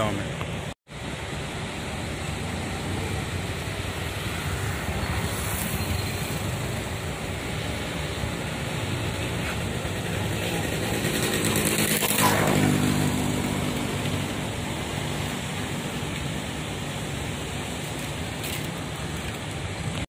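Steady outdoor road-traffic noise after a brief dropout near the start, with a vehicle passing closer and louder about twelve seconds in.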